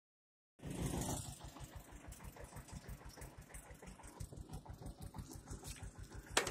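Bicycle rolling over an interlocking paver-brick road: a steady low rumble of rapid, even bumps, about eight a second, as the tyres cross the brick joints. It starts about half a second in and is loudest just after that.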